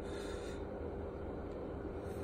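Steady low background hum of room noise with no distinct events.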